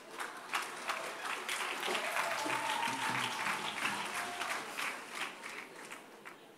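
Congregation applauding in a large hall, the clapping building over the first second and thinning out near the end, with one long high-pitched note held through the middle of it.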